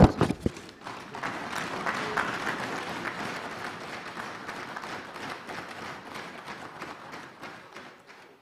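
Legislators in the assembly hall applauding after an oath is taken, opening with a few heavy thumps. The applause swells about two seconds in and then slowly fades away.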